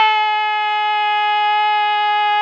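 A man's drawn-out shouted drill command: one long vowel held steady on a single pitch.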